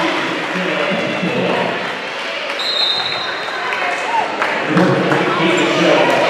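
Voices of players and spectators echoing in a school gym between volleyball rallies. A brief high tone comes about halfway through, and a few thuds follow near the end, from a volleyball bounced on the hardwood floor ahead of a serve.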